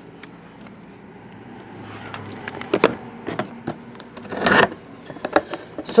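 Handling noise from a sealed cardboard trading-card case being moved on a table: scattered light knocks and clicks, with a brief rustle about four and a half seconds in.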